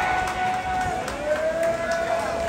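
Voices holding long drawn-out notes, a sustained cheer or chant from the crowd. The pitch shifts slightly lower about a second in.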